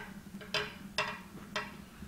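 Fabric scissors snipping through cloth: three short, sharp snips about half a second apart.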